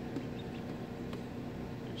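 Low steady hum with a couple of faint, brief clicks; no clear peeping.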